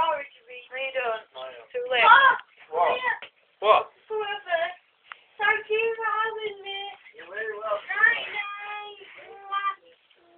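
A drunk woman singing in a high, wavering voice without clear words, in short phrases with a few longer held notes.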